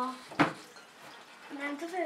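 A single sharp clink about half a second in: a stainless-steel pouring jug knocking against the glass neck of a round flask as alcohol is poured in.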